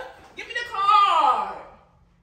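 Speech only: one person's voice, a drawn-out word or exclamation starting about half a second in, falling in pitch and fading out near the end.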